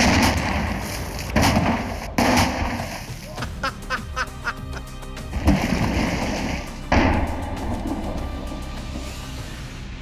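A small explosive charge going off underwater in a glass water tank: a sudden bang right at the countdown's end, then water splashing and sloshing. Several more sudden bangs with splashing follow over the next seven seconds, with music underneath.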